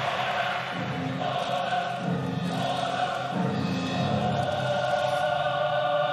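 Choral music: a choir singing long held, chant-like notes that change about once a second, at an even level.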